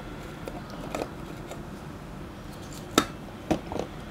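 A few light clicks and taps from handling a small metal tin and items in a drawer, the sharpest about three seconds in, with a few quicker ones just after.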